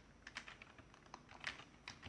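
Computer keyboard keys clicking faintly as a word is typed: a quick, irregular run of keystrokes.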